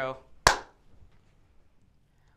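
A single sharp hand clap about half a second in, marking the start of a recorded take just called as "take one".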